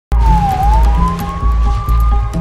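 Police siren wailing in one long sweep: its pitch dips briefly, then climbs slowly. Underneath, a film score with deep, pulsing bass.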